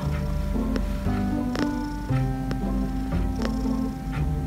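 Background music with steady, evenly struck notes, the loudest sound, over a cat's low, continuous purr.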